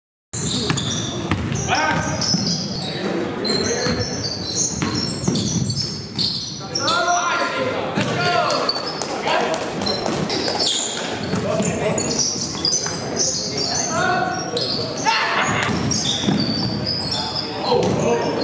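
Indoor basketball game: the ball bouncing on the court with players' indistinct voices and calls, echoing in a large gym hall.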